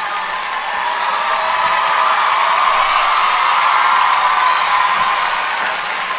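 A crowd's mixed noise of many voices together with clapping, growing louder in the middle and easing toward the end.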